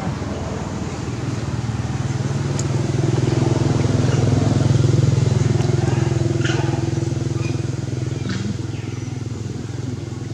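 A motor vehicle engine passing by: its low, steady hum swells to its loudest about halfway through and then fades.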